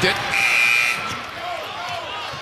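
Arena shot-clock horn sounding once, a steady high-pitched tone lasting about half a second, over crowd noise. It signals that the shot clock has run out.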